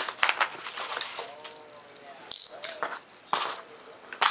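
Small tools and parts being picked up and moved around during a cleanup: a string of short knocks, clicks and scrapes.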